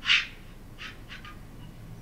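Short chirps of filtered noise from a software synthesizer layer made to imitate insects. One louder chirp comes right at the start, then a few faint ones about a second in.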